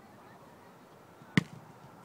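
A single sharp thud about a second and a half in: a foot kicking an Australian-rules football.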